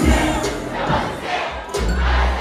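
Loud dancehall music with deep bass hits that drop in pitch, under a crowd shouting and singing along.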